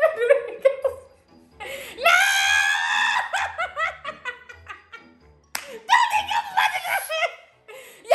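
A man and a woman laughing loudly together, with one long high-pitched peal of laughter about two seconds in and another burst a little past the middle.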